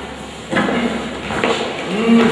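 Speech: a voice talking from about half a second in, with short breaks.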